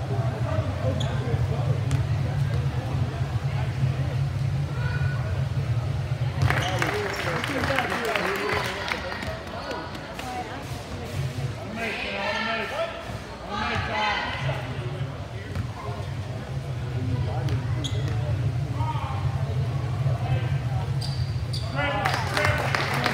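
Basketball bouncing on a hardwood gym floor, with spectators' voices in the gymnasium and a steady low hum that drops out for several seconds in the middle.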